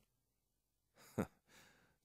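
Near silence, then a man's short sigh about a second in.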